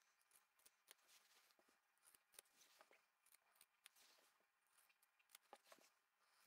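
Very faint snips of fabric scissors cutting through layered quilting cotton and batting, a string of small clicks at near silence.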